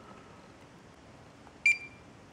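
A single short, high electronic beep from the LTL Acorn 5210A trail camera, about a second and a half in, as a button is pressed to leave playback.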